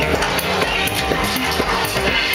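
Electronic dance music mixed live by a DJ, played loud over the club sound system with a steady beat.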